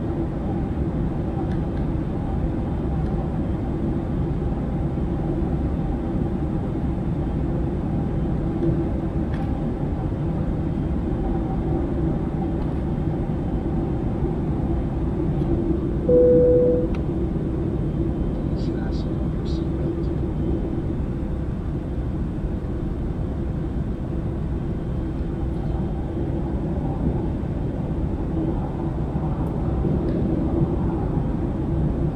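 Steady cabin noise of a jet airliner in cruise: an even rumble of engine and airflow with a constant low hum. About halfway through, a brief single steady tone sounds for under a second, and a few faint clicks follow.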